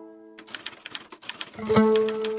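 Typewriter key-click sound effect, a quick run of sharp clicks beginning about half a second in, over background music whose held plucked notes fade and then come back louder near the end.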